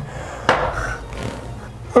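A single knock about half a second in that trails off quickly, over a low steady hum.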